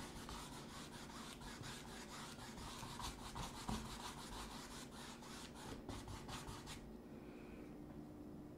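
Bristle paintbrush scrubbing thick acrylic paint onto a stretched canvas in rapid, repeated back-and-forth strokes, faint; the brushing stops about seven seconds in.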